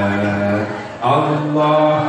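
A man chanting in long, held melodic notes, a new phrase starting about a second in.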